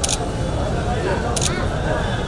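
Camera shutter firing twice, once at the start and again about a second and a half in, each a quick double click, over a steady hubbub of crowd chatter.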